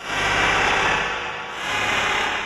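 Electronic synthesizer score: a wind-like swell of noise that starts abruptly, dips about one and a half seconds in, then swells again and fades.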